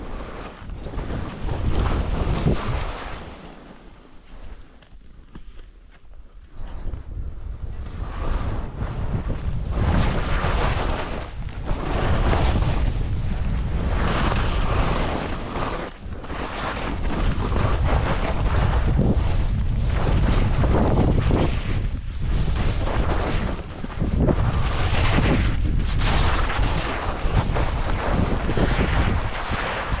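Wind rushing over the camera microphone of a skier going downhill, mixed with skis scraping on packed snow. The noise swells and eases every second or two with the turns, with a quieter spell about four to seven seconds in.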